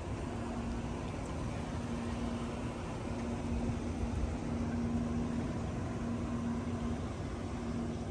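Steady outdoor background noise with a low, steady mechanical hum that stops shortly before the end.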